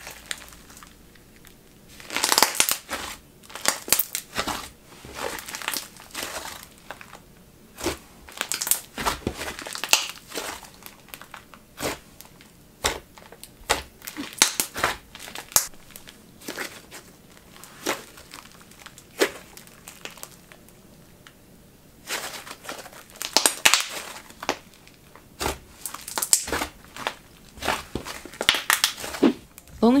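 Thick, dense DIY clay slime squeezed and kneaded by hand, its trapped air bubbles popping in irregular runs of sharp clicks and crackles, with a quieter stretch in the middle.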